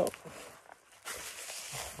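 Faint rustling and scraping of a blood pressure cuff strap being fitted and adjusted, with a few soft clicks and a steadier rustle from about a second in.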